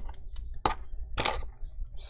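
A few sharp clicks and light knocks of small precision screwdrivers being picked up and handled, the two loudest a little over half a second apart.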